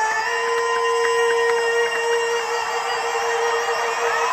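A live band holding a sustained keyboard chord through the arena PA, one steady note with a few higher notes held above it.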